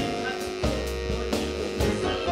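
Live band playing: a drum kit keeps a steady beat under guitar and other sustained instrument tones.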